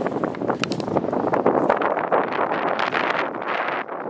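Wind buffeting the camera's microphone: a loud, rough, gusting rumble with crackling.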